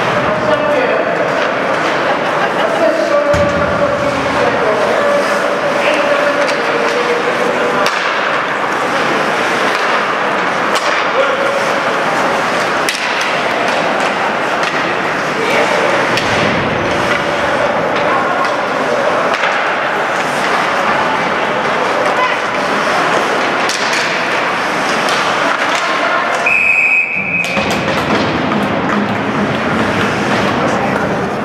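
Ice rink game sound: spectator voices and calls throughout, with the knocks of pucks and sticks against the boards. A referee's whistle blows once near the end, a single short steady blast that stops play.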